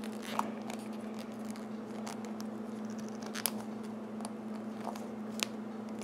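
Faint scraping and a few small clicks of hands twisting a plastic action-figure head onto its neck peg, with a steady low hum underneath.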